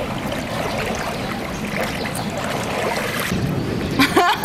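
Swimming pool water sloshing and lapping around a person standing in it, a steady rushing noise.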